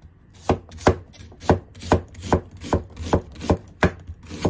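Kitchen knife slicing through an onion and striking the cutting board, about nine even chops at a little under three a second, starting about half a second in.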